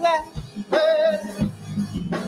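A solo singer holding high notes with vibrato over a low, steady accompaniment; the singing pauses near the end while the accompaniment carries on.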